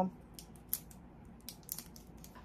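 A few faint, short clicks and rustles from a handheld glue-dot dispenser being pressed and rolled onto a small pink paper gift item.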